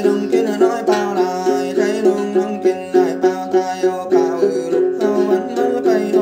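Đàn tính, the long-necked gourd-bodied lute of then singing, plucked in a steady, even rhythm of about three to four notes a second. A man's voice sings a then melody over it.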